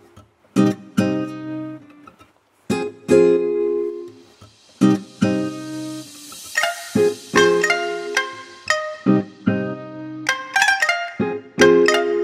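Background music: chords plucked on a guitar-like string instrument, each struck and left to ring out, with a soft hiss swelling and fading in the middle.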